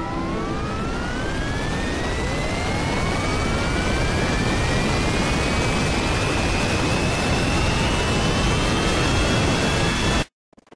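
Jet engine spooling up: a loud rushing noise with several whines rising in pitch one after another, growing steadily louder.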